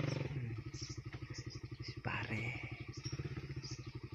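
Small motorcycle engine dropping from a higher run to idle in the first half-second, then idling with an even putter of about ten beats a second. A short hissing noise comes about two seconds in.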